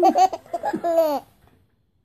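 A baby laughing in a few short, high-pitched bursts that rise and fall over about the first second, then stopping.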